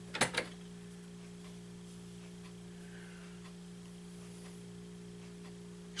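Steady low hum of several fixed tones, with one short knock just after the start.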